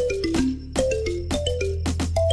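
Background music: a bright melody of short notes stepping downward in pitch, repeating over a steady bass and a regular percussion beat.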